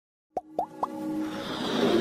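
Logo-intro sound design: three quick pops, each rising in pitch, about a quarter second apart, then a swelling whoosh with held synth tones building into the intro music.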